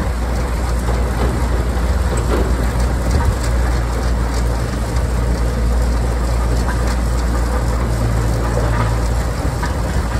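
CTM 9060 beet cleaner running loaded, with sugar beet rattling and tumbling through it as it is de-stoned and cleaned, over the steady low drone of the tractor and loader engines.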